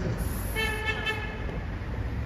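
A vehicle horn sounds once, a steady pitched tone lasting under a second, over a low rumble of street traffic.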